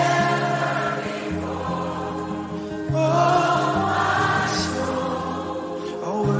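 Slow Christian worship music with a choir singing long held notes over a sustained bass line, the chords changing every second or two.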